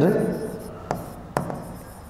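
Chalk writing on a blackboard: a few sharp taps as the chalk meets the board, about a second in and again half a second later, with faint scratching between. A man's word trails off right at the start.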